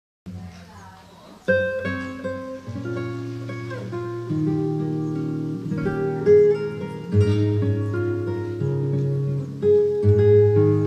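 Classical guitar playing a song's introduction: plucked melody notes over held low notes. It starts faintly and comes in fully about a second and a half in.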